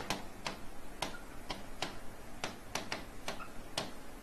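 A pen clicking and tapping against the glass of an interactive whiteboard screen while writing: a dozen or so short, sharp clicks at an uneven pace, about two to three a second.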